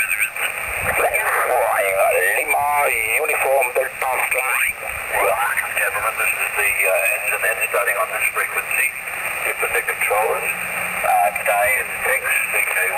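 Voices on 20-metre single-sideband coming through a Yaesu FT-817 transceiver's speaker: thin, narrow-band speech over a faint hiss of band noise, with no clear words.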